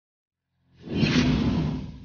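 A whoosh sound effect: after a silent start, a swelling swish comes in about two-thirds of a second in, is loudest for under a second, then fades.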